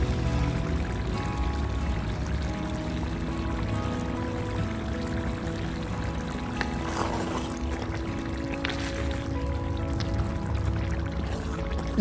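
Calm background music with slowly changing held notes over a steady bass. Underneath, a soft sizzle of tomato sofrito frying in a clay cazuela.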